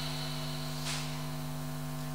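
Steady electrical hum with a layer of hiss, the constant background noise of the recording or sound system.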